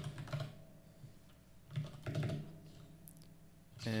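Typing on a computer keyboard in short bursts of key clicks with brief pauses between them.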